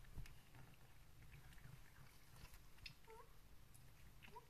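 A domestic cat gives one short, quiet meow about three seconds in, over faint scattered ticks and taps.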